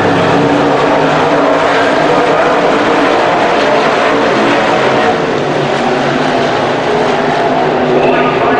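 Dirt-track modified race cars' engines running on the oval, a steady, loud drone of more than one engine that eases slightly about five seconds in.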